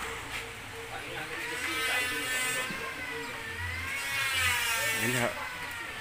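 A person's voice in two long, drawn-out stretches with slowly wavering pitch, over a steady low hum.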